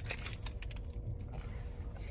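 Light crinkling and small clicks of a foil Pokémon card booster pack being handled, over a low steady rumble.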